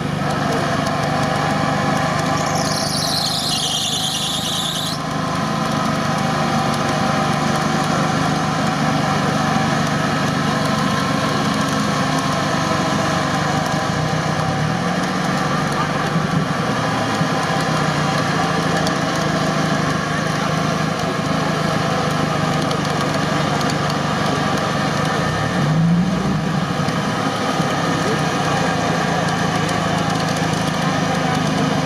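Engines of two off-road 4x4s stuck side by side in a mud bog, running steadily and revving up briefly twice, about halfway through and near the end. A high, falling squeal sounds about three seconds in.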